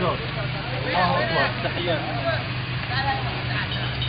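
Several men's voices talking over a steady low hum of an idling vehicle engine.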